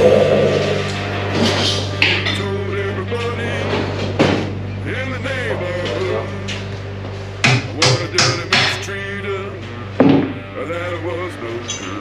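Background music playing over a run of about seven sharp metal knocks, most bunched together in the second half, as the stock kickstand is worked off a bare Yamaha XS650 motorcycle frame.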